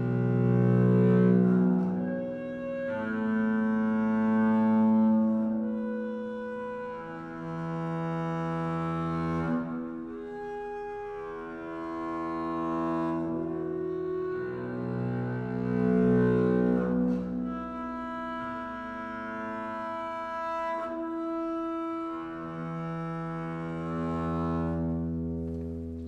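Solo double bass bowed sul ponticello, playing slow, long-held notes that change every two seconds or so. Each open string grows out of a natural harmonic, with multiphonics in the passage between the two.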